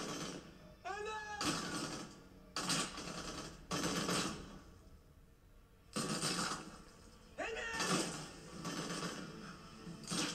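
Quiet TV show audio: a voice shouting "M.M.!" with short bursts of noise in between and a near-silent pause midway, then a second short call.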